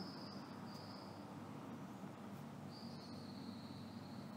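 Faint high, steady insect trill, stopping about a second in and starting again near three seconds, over a low steady hum.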